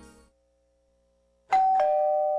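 After a short silence, a two-tone doorbell chime about one and a half seconds in: a higher ding, then a lower dong, both ringing on.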